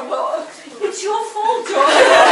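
A small group of people chuckling and talking. Near the end many voices come in together, suddenly louder, in overlapping laughter and chatter.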